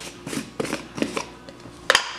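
Plastic screw-top lid of a powder supplement tub being twisted off by hand: a run of small irregular clicks and scrapes, with a sharper double click near the end.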